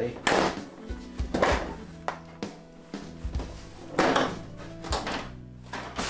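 A plastic TV back cover being pulled off and set aside, making about five short handling and scraping noises, over background music.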